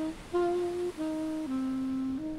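Alto saxophone playing a slow melody of held notes, each about half a second long, the line stepping down in pitch over the second half.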